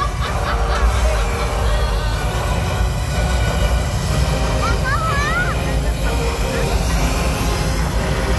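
Show flame effects on the water firing in a loud, steady low rumble, with a brief high voice calling out about halfway through.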